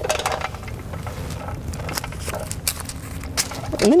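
A plastic vapor barrier sheet and the masking paper under it rustling and crinkling as it is smoothed flat by hand and its corners are taped down, with scattered small clicks and taps.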